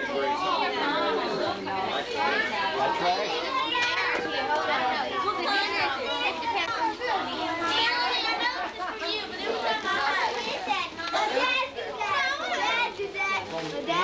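Many people talking at once, children's voices among the adults, in a steady crowded-room chatter with no single voice standing out.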